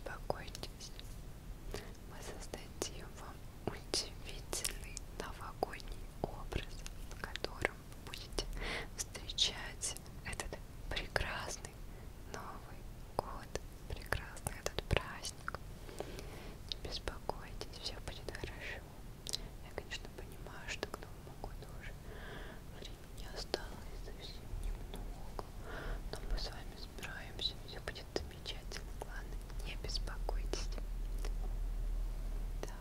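A woman whispering close to the microphone, with frequent small mouth clicks between the soft, breathy words.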